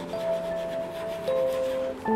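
Chalk scratching in short strokes on a chalkboard as a word is written, over soft background music with long held notes.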